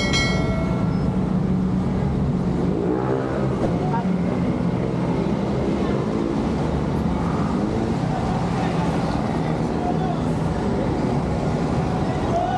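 Busy street ambience with a motor vehicle engine running steadily and voices in the background; a short high tone sounds right at the start.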